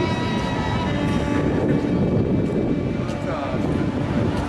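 Music with a held string note ends about a second in. Steady low rumbling background noise follows, with faint indistinct voices.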